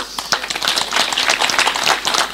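An audience applauding: many hands clapping in a dense, steady patter.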